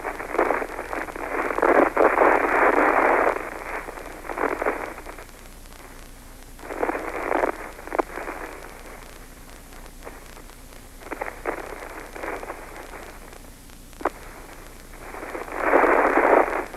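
Space-to-ground radio channel hiss, thin and cut off above and below like a radio voice band, coming in several bursts of one to three seconds with quieter gaps between and a couple of sharp clicks.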